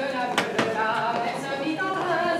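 Group of voices singing an unaccompanied French folk dance song, with two sharp knocks about half a second in.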